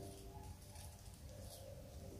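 Near silence: faint outdoor background with a low rumble and a faint steady hum.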